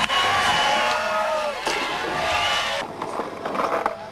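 Skateboard wheels rolling over hard pavement in two long noisy runs, with raised, shouting voices over them. It is quieter near the end.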